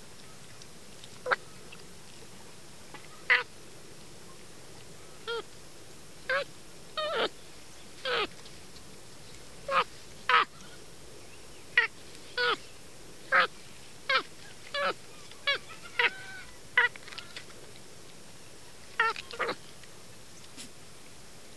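A capuchin monkey making about twenty short, high calls while it eats corn, one every second or so, some in quick pairs, each dropping in pitch at the end.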